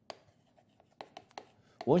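Chalk writing on a chalkboard: a quick series of short taps and scratches as each stroke of the characters is made.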